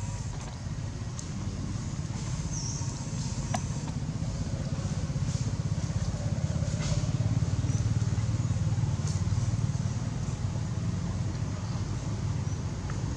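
Low, steady motor-vehicle engine drone that swells through the middle and eases off near the end, with a few faint clicks over it.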